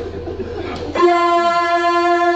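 A man's chanting voice over a microphone, holding one long steady note that starts about a second in: unaccompanied Pashto nauha recitation.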